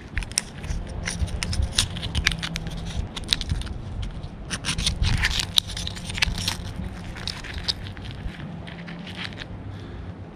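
Dull knife blade scraping around the inside of a mussel shell, a quick irregular run of scrapes and clicks, as the meat is worked loose from the shell for bait.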